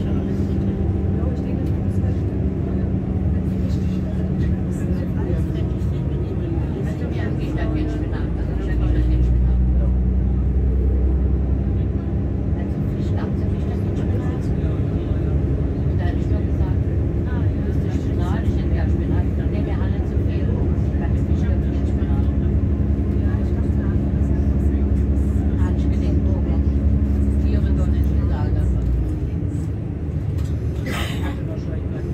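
Cabin noise of a moving diesel regional train: a steady engine drone and track rumble with held low tones. The drone grows heavier about nine seconds in and eases again shortly before the end.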